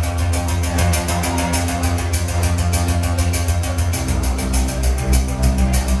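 Live band playing an instrumental passage of a synth-pop song: a fast, steady ticking beat over held bass notes, with the bass line shifting to a new note about four seconds in.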